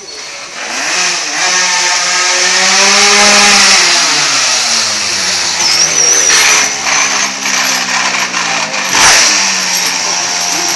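Pocket bike's small two-stroke engine revving hard, its pitch rising and falling with the throttle as it rides; it grows loud about a second in.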